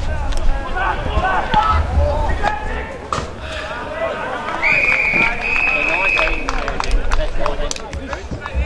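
Players and spectators shouting across an open ground, with wind rumbling on the microphone. About halfway through, an umpire's whistle blows one long blast of nearly two seconds, stepping slightly up in pitch partway.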